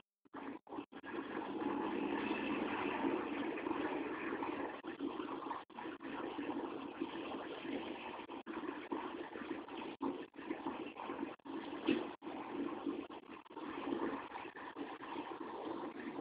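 A vehicle engine running steadily, with its sound broken up by frequent brief dropouts.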